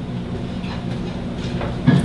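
A steady low hum fills a pause between spoken lines, with faint brief sounds in the second half.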